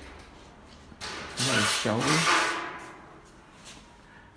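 A steel tray scraping against a blue metal mobile tray rack as it is handled. The rubbing noise comes in about a second in and fades out over the next second and a half.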